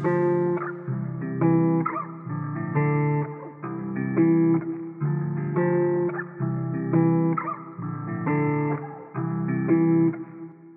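Instrumental hip-hop beat's closing section: a plucked guitar melody looping on its own with no drums, dull-sounding with its treble filtered off.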